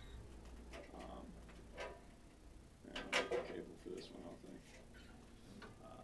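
Quiet room sound with a low hum, a few small clicks and taps, and faint voices, with a brief louder burst of a voice about three seconds in.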